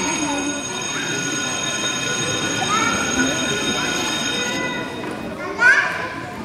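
A steady, high-pitched electronic ringing tone of several pitches at once, cutting off suddenly about five and a half seconds in, with children's voices over it.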